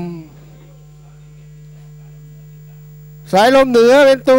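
Steady electrical mains hum on the broadcast audio. A race caller's drawn-out call trails off at the start and starts again about three seconds in.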